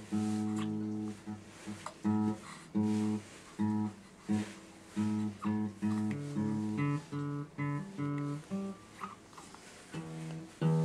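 Acoustic guitar being played at a slow, even pace: picked notes and chords, one to two a second, each ringing and fading before the next.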